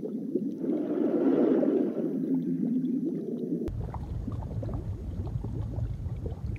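Underwater bubbling sound effect of an animated aquarium DVD menu, swelling about a second in. Past the halfway mark it cuts suddenly to a lower, rumbling loop of bubbling tank water.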